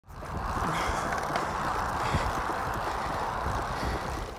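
Steady rush of wind and tyre noise from a road bicycle rolling fast on asphalt. It fades in quickly at the start.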